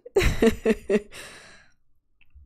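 A woman's breathy laugh trailing off into a sigh: a burst of breath with a few short voiced pulses, fading away over about a second and a half.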